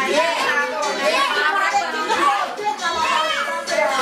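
Many women's and children's voices talking and calling out over each other, lively and overlapping.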